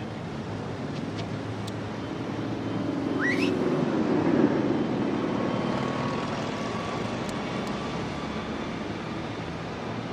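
City street ambience with a steady wash of traffic noise that swells in the middle, and a brief rising sweep about three seconds in.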